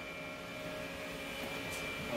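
Steady background hum of a machine shop, machinery and ventilation running, with a faint steady whine in it.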